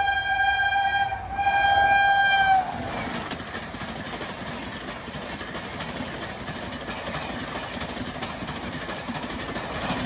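Electric locomotive horn, a WAP7's, sounding a long, loud high note in two parts with a short break, cutting off about two and a half seconds in with a slight drop in pitch as the locomotive passes. Then the coaches of a passenger train rush past at speed, a steady rumble of wheels on the rails.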